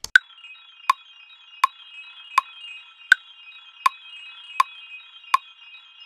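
A counter piano part plays back from a DAW as a few high notes held together, over a metronome clicking about 80 times a minute. Every fourth click is higher-pitched, marking the start of each bar.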